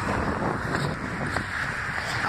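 Steady wind noise on a phone microphone, mixed with passing road traffic.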